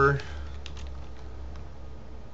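Computer keyboard being typed: a string of light, irregular key clicks over a low steady hum.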